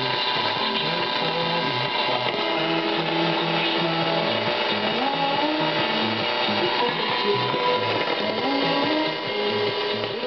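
Music from Radio France International's 162 kHz longwave broadcast, playing from a Drake SW4A receiver through its MS-4 speaker. It is a long-distance signal that the listener credits to solar-flare-aided propagation, with a haze of noise and steady tones over the programme.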